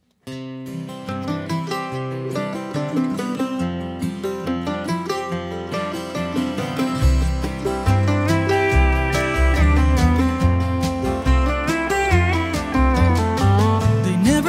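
A live country gospel band plays an instrumental intro on acoustic guitar and mandolin. It starts suddenly just after the beginning, and deep bass notes, most likely the upright bass, come in strongly about halfway through.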